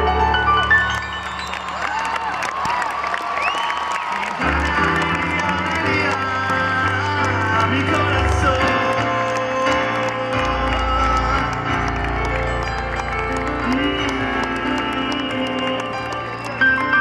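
Live band music with piano in an instrumental passage between sung lines, with the audience cheering and whooping over it.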